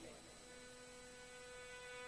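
Near silence with a faint steady hum; a held tone comes in about half a second in and stays level.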